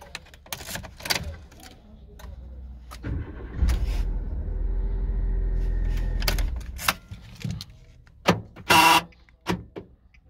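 Nissan Micra K12 engine started with the original key: clicks as the key goes into the ignition and turns, then the starter cranks and the engine catches about three seconds in, runs steadily for about three seconds and is switched off. Clicks and a jangle of keys follow near the end.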